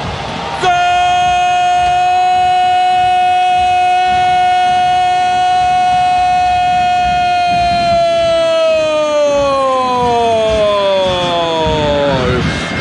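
Football commentator's long, held goal cry, one high sustained note for about seven seconds that then slides steadily down in pitch, over crowd noise.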